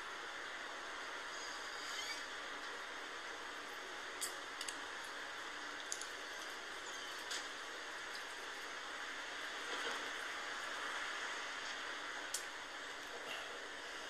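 A long drink from a bottle of malt liquor: faint gulps and a few small, sharp clicks from the bottle and mouth over a steady hiss.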